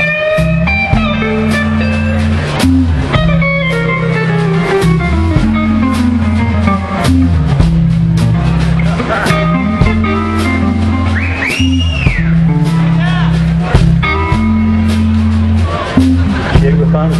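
Live band playing an instrumental passage: a bass line holding low repeated notes, a drum kit keeping a steady beat, and a guitar playing melodic lead phrases, with one note bent up and back down about twelve seconds in.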